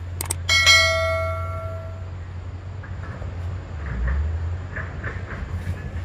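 A single bell-like metallic chime rings out about half a second in, just after a couple of clicks, and fades away over about a second and a half. A steady low hum continues underneath.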